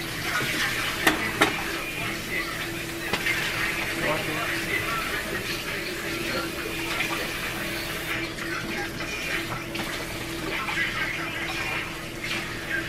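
Flour-battered steaks sizzling and crackling in hot oil in a skillet, a steady frying sound, with a couple of light knocks about a second in.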